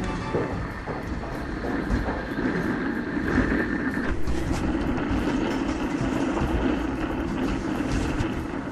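Steady vehicle rumble, with a high steady tone for a couple of seconds near the start.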